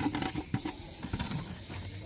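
Faint clicks and light rustles of a cut-off clear plastic water-gallon bottle being handled as a cover over a potted cutting, over a steady low hum.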